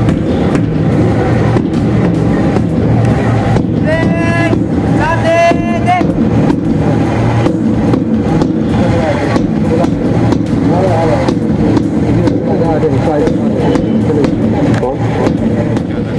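Loud, muddled sound on an outdoor sports field: a steady low rumble with music and voices mixed in. Two long pitched calls stand out about four and five and a half seconds in.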